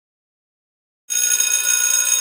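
An electric bell ringing loudly and steadily. It cuts in suddenly out of silence about a second in.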